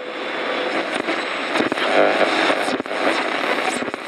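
A steady, dense hiss-like noise with scattered sharp clicks and crackles, starting suddenly just before the picture returns.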